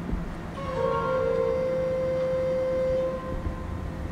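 Pipe organ playing a quiet, meditative passage. A soft held chord of a few steady notes comes in about half a second in, sustains, and fades out near the end, over a faint low rumble.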